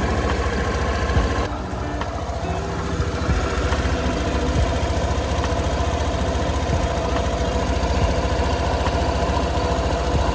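Suzuki Burgman 125 scooter's single-cylinder four-stroke engine running steadily on the stand, with the rear wheel turning. The engine has been run after a fresh engine and transmission oil change to check for leaks.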